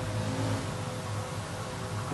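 Steady low mechanical hum of commercial kitchen equipment, with a constant low drone and a faint steady higher tone.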